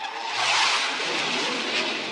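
A steady rushing noise that starts abruptly and holds even throughout.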